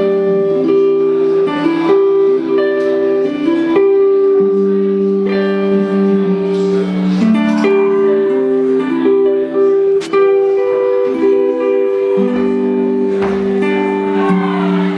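Electric guitar, a Fender, picked in a slow pattern of chords with the notes ringing over one another: the instrumental intro of the song before the singing begins.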